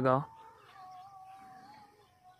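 A man's voice breaks off at the start. Then a faint, drawn-out animal cry is held at one pitch, wavering slightly, and carries on past the end.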